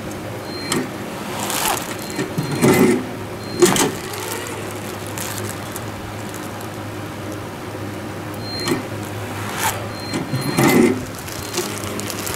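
Semi-automatic plastic-strap strapping machine running two strapping cycles over a steady machine hum: short bursts of motor whirring and clicks as the strap is pulled tight, sealed and cut, with brief high-pitched chirps. The bursts come in the first four seconds and again from about eight and a half to eleven seconds in.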